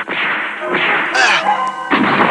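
Cartoon fight sound effects: a rapid run of rushing whip-like swishes one after another. The middle one carries a quick whistling glide, and another starts near the end.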